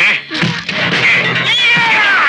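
High-pitched wailing cries that waver up and down, ending in a long falling wail, over dramatic film background music.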